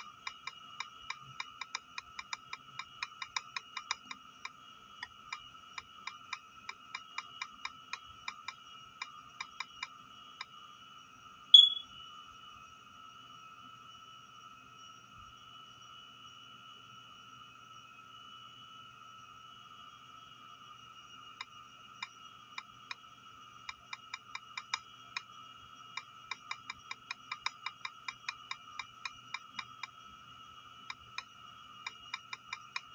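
Rapid taps typing on a tablet's on-screen keyboard, about three a second. They stop after one louder blip near the middle and start again about ten seconds later. A faint, steady, high-pitched whine runs underneath.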